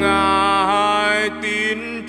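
Slow worship song with a solo singer holding a long final note over piano and a sustained low bass note.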